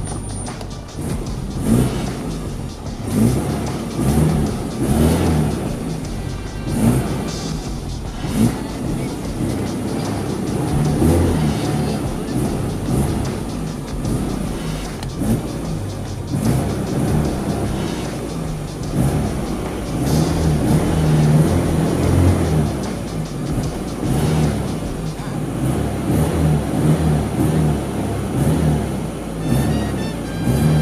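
Austin Mini's 998cc A-series four-cylinder engine running and being revved, heard from inside the car's cabin, with repeated rises and falls in revs. Background music plays over it.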